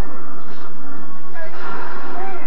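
Television soundtrack playing music, with a few brief voices over it.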